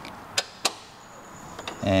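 Two sharp clicks about a quarter second apart, from hand work with a hex driver on the foot peg's mounting bolt.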